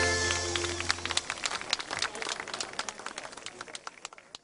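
A laiko band with bouzoukis ends a song on a held final chord that dies away about a second in. Scattered audience clapping follows, fading steadily.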